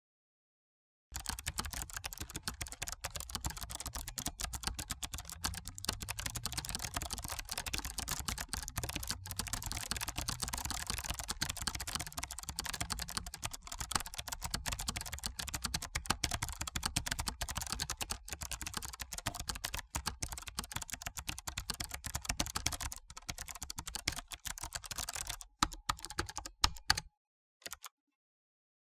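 Rapid, continuous keyboard-typing sound effect, a dense run of keystroke clicks that starts about a second in and stops shortly before the end, after a few last taps.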